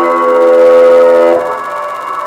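Free-improvised ensemble music of trombone, pedal steel guitar and electronics: a loud, steady held tone sounding several pitches at once starts sharply and cuts off about one and a half seconds in, leaving quieter playing.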